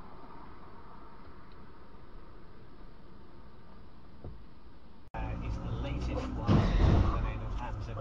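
Steady low traffic hum heard from a dashcam on a road. About five seconds in it cuts abruptly to a louder recording with a deep rumbling swell a second or two later.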